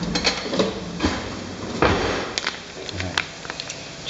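Plastic food pouch rustling and crinkling as it is handled, with scattered sharp clicks and knocks.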